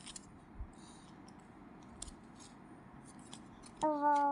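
Small hands handling stiff paper flash cards: faint scattered clicks and scratchy rustles. Just before the end a loud, steady pitched sound starts.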